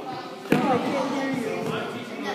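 A thrown ball landing with a single sharp smack about half a second in, echoing in a large gym, followed by children's voices.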